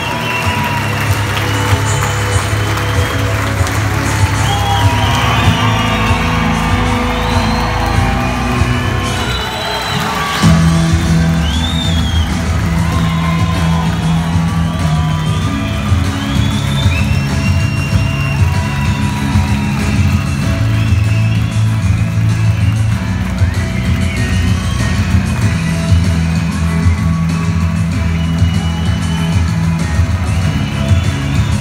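Loud music with a steady bass line filling a large hall, while a big audience cheers and whoops over it, most heavily in the first third.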